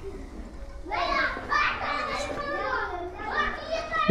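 Children's voices chattering and talking, starting about a second in.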